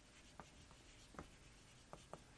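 Chalk writing on a blackboard: a few faint, short taps and scrapes over quiet room tone.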